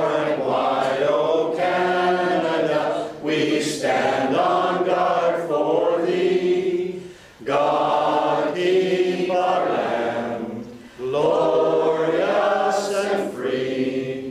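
Choir singing a slow vocal piece in long held phrases, with short breaks between phrases every few seconds.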